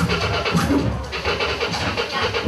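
Turntable scratching: a vinyl record pushed back and forth by hand in quick, choppy strokes, loud throughout.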